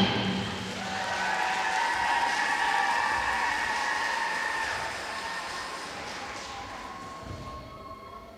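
Audience applause in a large hall after the routine's music stops, building over the first couple of seconds and then slowly dying away.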